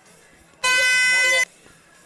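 A timekeeper's horn sounds once: a single steady, high blast of under a second that starts and stops abruptly. It is the signal for the cornermen to clear the cage before the next round.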